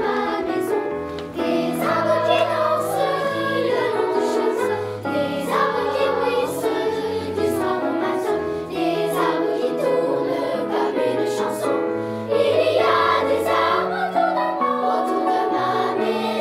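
Children's choir singing in sustained, slowly moving lines with piano accompaniment.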